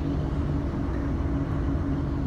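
Inside the carriage of a Class 150 diesel multiple unit: the underfloor diesel engine and running gear give a steady low hum and rumble as the train comes into the station.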